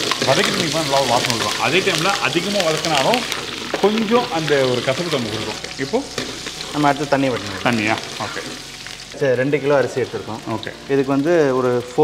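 Tempering sizzling in hot oil in a large kadai as it is stirred with a long metal ladle, with men talking over it.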